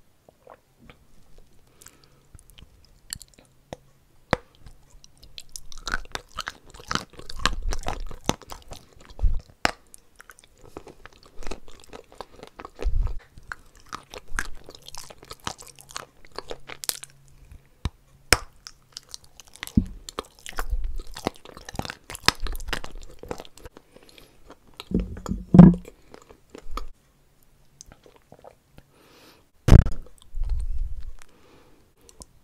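Close-up chewing and crunching of a mouthful of white chalky clay, with irregular gritty crunches and clicks. It starts quietly, turns into steady chewing after a few seconds, and has its loudest crunch a little before the end, then another sharp bite right at the end.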